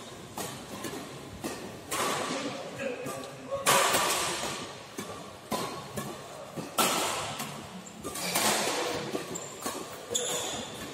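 Badminton rally: rackets strike the shuttlecock every second or two, with harder hits about two, four, seven and eight and a half seconds in, each echoing briefly around the hall.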